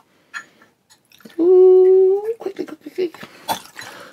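A cork stopper squeaking as it is twisted out of a rum bottle: one steady squeal of about a second that rises in pitch just as it comes free. A few light knocks and clicks follow.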